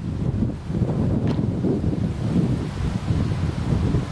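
Wind buffeting the camera microphone: a low, gusting rumble that rises and falls.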